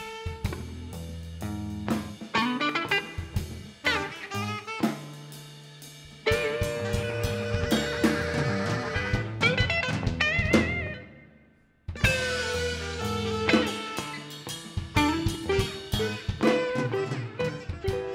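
Live rock band playing: electric guitar over bass guitar, keyboard and drum kit. Just past the middle the music dies away to near silence for about a second, then the full band comes back in at once.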